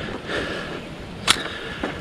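Wind noise on the microphone outdoors, with one sharp click about two-thirds of the way in.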